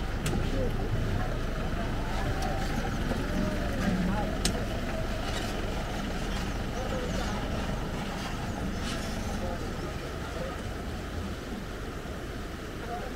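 A steady low rumble with indistinct voices faintly underneath and a couple of sharp clicks.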